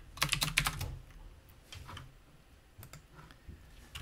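Computer keyboard keystrokes: a quick run of several keys in the first second, then a few single key presses spaced out after it.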